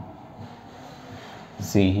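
Low, steady room noise, then a man's voice starts near the end.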